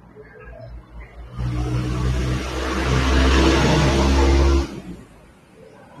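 A motor vehicle's engine running loudly with a steady low hum for about three seconds, then cutting off suddenly.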